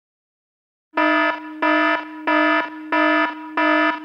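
Electronic alarm beeping: after about a second of silence, five buzzy beeps repeat about one and a half times a second.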